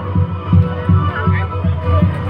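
Background music with a low, pulsing beat and a steady hum beneath it, heard through a loud sound system.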